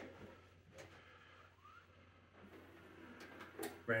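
Symphonic VR-701 VHS VCR loading a just-inserted cassette: faint mechanism whirring with a few soft clicks and a short rising whine.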